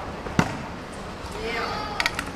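A stunt scooter lands with a single sharp clack on stone paving about half a second in. Near the end, a voice calls out briefly without words.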